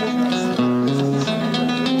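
Solo nylon-string classical guitar played fingerstyle: a plucked melody over a moving bass line, the notes changing several times a second.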